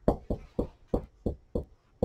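Marker writing on a whiteboard: a quick series of short knocks as the strokes land on the board, about eight in two seconds.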